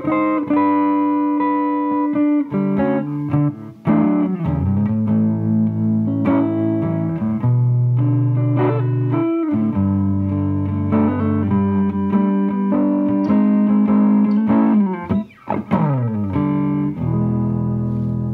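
Electric guitar played through a Goodsell Custom 33 tube combo amp, long sustained notes and chords ringing out. Twice, once a few seconds in and again near the end, the pitch slides downward.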